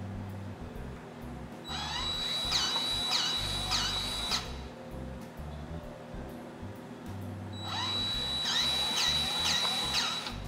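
Cordless DeWalt grease gun running in two bursts of about two and a half seconds each, a high motor whine pulsing about twice a second as it pumps grease into a V-plow's center pivot column.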